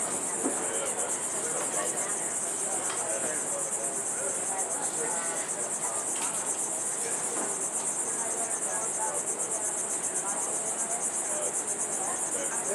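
A chorus of insects trilling steadily: a high-pitched, rapidly pulsing buzz that carries on without a break.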